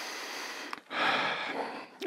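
A man breathing audibly, two breaths of about a second each, a soft rushing sound with no voice in it.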